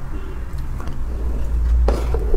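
Close-miked mouth sounds of eating thick, soft chocolate cake off a spoon, over a steady low rumble, with a sharp click near the end as the spoon goes back into the cake.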